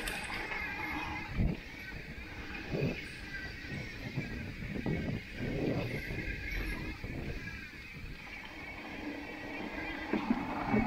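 Mountain bike rolling fast downhill on a dirt and gravel trail: steady tyre and wind noise with the bike rattling and knocking over bumps, loudest about one and a half, three and five to six seconds in.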